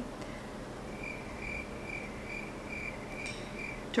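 A faint, high-pitched chirp or beep repeating evenly about two and a half times a second, starting just after the beginning and stopping shortly before the end.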